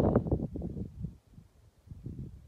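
Wind buffeting the microphone in uneven low gusts, dying away about halfway through and picking up again near the end.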